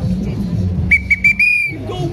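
A whistle blown in three short toots followed by a longer blast, high and shrill, over the low noise of a marching crowd.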